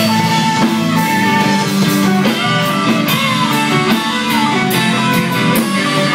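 Live rock band playing an instrumental passage with no singing: electric guitars, bass guitar and drum kit, with a lead line bending in pitch about halfway through.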